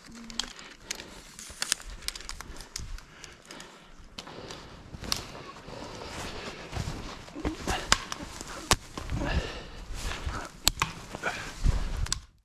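Footsteps crunching in snow, with scattered sharp clicks and cracks of spruce twigs snapping and rustling as snow-laden branches are cleared by hand, busier in the second half.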